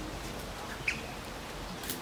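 Faint outdoor background with a single short, high bird chirp just under a second in, and a brief click near the end.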